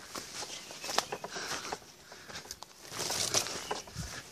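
Footsteps through woodland undergrowth, leaves and twigs crackling underfoot in irregular clicks, with a louder rustle about three seconds in.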